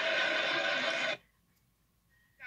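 Sitcom studio audience cheering and whooping over a kiss, a steady massed sound that cuts off suddenly about a second in, followed by near silence.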